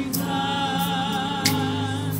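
A group of women singing gospel through a PA, holding a long note with vibrato over sustained keyboard chords. The chords change about three-quarters of the way through.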